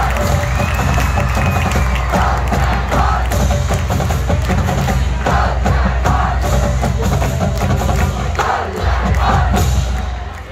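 Marching band playing loudly, heavy low brass and drums with sharp percussion strokes, while the crowd in the stands cheers and shouts over it.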